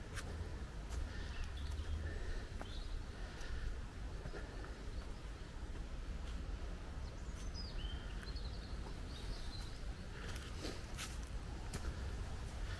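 Small birds chirping and calling on and off over a steady low rumble, with footsteps on a dirt path.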